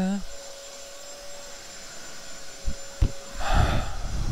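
A man's sung note into a close handheld microphone ends at the start. A faint steady tone follows, with two short handling knocks about three seconds in and a breathy rush into the microphone near the end.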